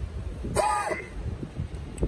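A man clearing his throat once, about half a second in: a short rasping burst followed by a brief voiced sound. Wind rumbles on the microphone underneath.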